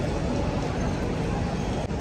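Steady background noise of an airport check-in hall: a low rumble with faint distant voices.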